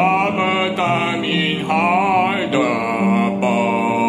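A man singing with wide vibrato on long held notes while accompanying himself on piano.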